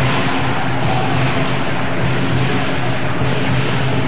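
Steady, dense crowd noise from the spectators at a sepak takraw match, heard through an old, worn broadcast videotape recording.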